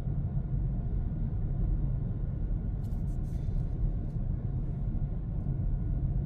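Steady low road and tyre rumble inside the cabin of an electric Hyundai Kona while it drives.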